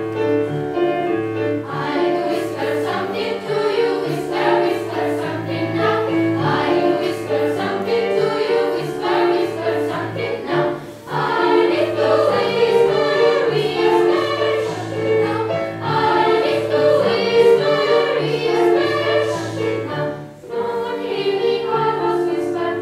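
Children's choir singing with piano accompaniment; the voices come in about two seconds in over the piano, with brief breaks between phrases about halfway through and near the end.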